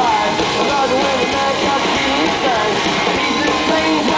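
A rock band playing live at full volume, with electric guitars and drums, heard from among the audience. Wavering voices run over the music.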